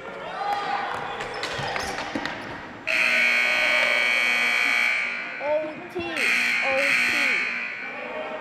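Arena scoreboard buzzer sounding two long blasts, the first about two seconds and the second about a second and a half, with the game clock run down to zero: the end of the period. Before the buzzer, the ball and sticks clatter on the hard gym floor, and players' voices call out between the blasts.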